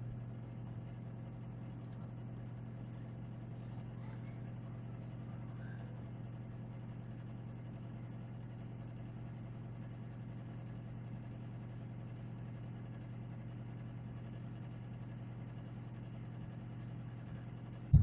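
Steady low background hum with faint hiss, and no speech. A single sharp click comes near the end.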